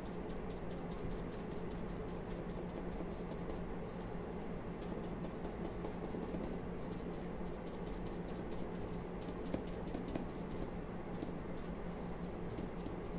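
Foam pouncer dabbing chalk paint onto a stone-covered MDF plaque: rapid, irregular runs of soft taps with brief pauses, over a faint steady hum.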